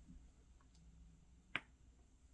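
Near silence broken once, about one and a half seconds in, by a single sharp click of fingers or nails tapping tarot cards on a table.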